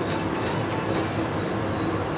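A steel ladle stirring a coconut-based leaf curry as it boils in an aluminium pot, a steady bubbling and stirring noise, with background music.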